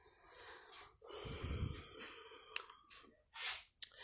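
Soft rustling noise, with a sharp click about two and a half seconds in and a short breath near the end.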